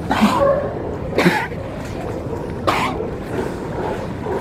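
California sea lions barking: three short, hoarse barks spaced about a second apart, over a steady wash of sea water.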